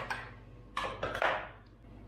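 Brief handling noise about a second in: a short scratchy rustle and clatter as a bicycle pump and its hose are moved by hand.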